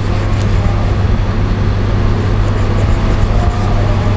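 Steady rumble and low hum of a restaurant kitchen's ventilation, with a few faint taps of a chef's knife cutting a rice-paper spring roll on a plastic cutting board.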